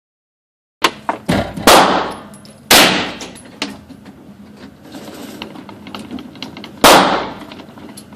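Kel-Tec Sub-2000 9mm carbine fired shot by shot at an indoor range, each report echoing briefly off the walls. The shots come in a quick run of four within the first three seconds, then one more after a pause near the end, with fainter clicks between them.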